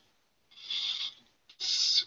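Two short breaths drawn close to the microphone, the second just before speech resumes.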